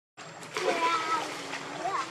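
Water splashing as a macaque dives and comes up in a shallow pool, loudest for about a second after a brief moment of silence at the start.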